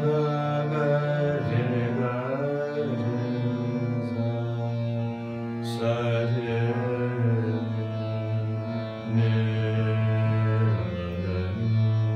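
A male voice singing a slow, wordless Hindustani alaap in raga Gaurimanjari, sliding between long held notes, over sustained drone notes.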